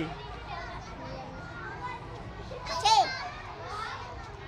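Children's voices in the background, with one child's short, high-pitched vocal cry about three seconds in.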